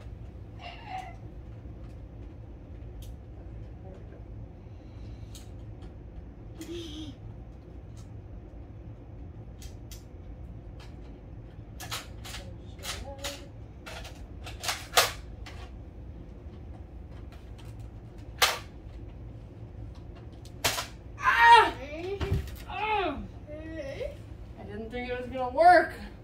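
Plastic clicks and clacks of a Nerf blaster being worked by hand to clear a jam: a handful of sharp clicks a second or so apart, then one more a few seconds later. Near the end a person's voice, louder than the clicks.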